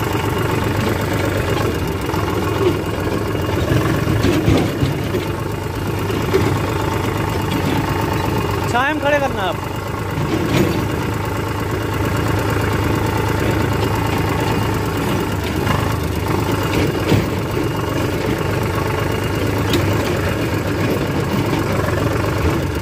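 A tractor's diesel engine running steadily while the tractor is driven, heard close from the driver's seat.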